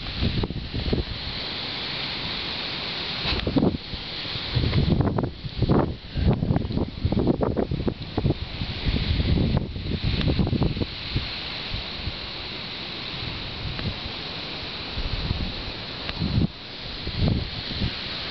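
Wind buffeting the microphone in irregular low gusts over a steady rushing hiss.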